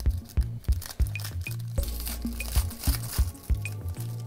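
Background electronic music with a steady beat and held bass notes. Over it, about halfway through, the crinkle of a foil trading-card pack being torn open by hand.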